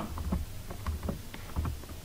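Computer keyboard being typed: a string of light key clicks over a low steady hum.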